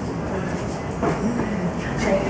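Murmur of a group of people chatting among themselves over a steady background of noise, with no single voice standing out.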